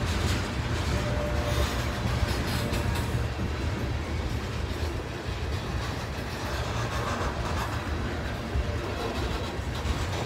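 Freight cars of a CSX manifest train rolling past close by: a steady rumble of steel wheels on the rails.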